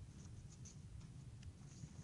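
Near silence over a low room hum, with faint, scattered rustles and small clicks of paper sheets being handled.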